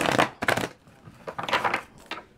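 A deck of tarot cards being shuffled and handled, in three short rustling bursts.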